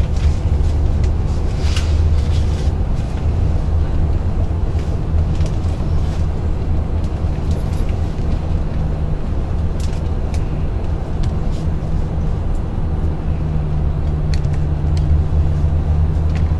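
Steady low vehicle rumble heard inside a stretch limousine's passenger cabin, with a few faint light clicks.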